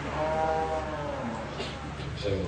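A single drawn-out vocal call, about a second long, wavering slightly in pitch, over faint background noise.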